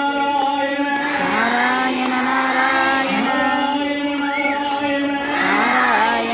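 Crowd of children and adults singing a devotional bhajan together, holding long notes in unison, with a light, regular beat about twice a second.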